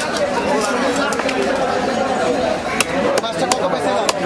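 People chattering, with several short, sharp cracks as a large silver carp is pushed down and cut through on an upright fixed blade.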